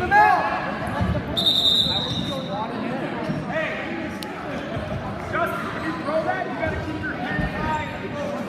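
Wrestling-mat thuds from bodies and feet under indistinct shouting from coaches and spectators in a large gym. One short, steady referee's whistle about a second and a half in, stopping the bout.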